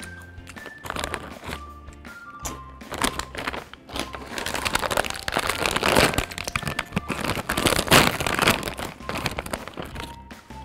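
Plastic snack bag crinkling loudly as it is handled and torn open, loudest in the second half, over background music with a steady bass line.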